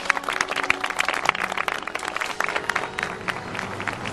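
An audience applauding: many hands clapping irregularly, with faint sustained music underneath that fades away in the first couple of seconds.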